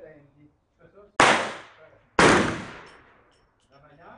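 Two pistol shots about a second apart, each loud and sharp with an echo that fades over about a second.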